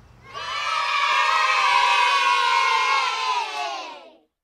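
A group of children cheering together in one long cheer that starts just after the beginning, holds loud, slides slightly down in pitch, and fades out at the end.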